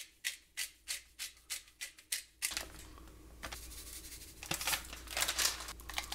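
A run of short, crisp scratching strokes, about three a second, as fingers rub seasoning over a bowl of meatball mix. They stop about two and a half seconds in, followed by rustling as a plastic spice bag is handled.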